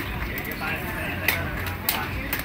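Mountain bikes rolling past, with a murmur of background voices and two sharp clicks in the second half.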